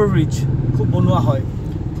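Steady low rumble of a car driving in city traffic, heard from inside the vehicle. A voice speaks briefly at the start and again about a second in.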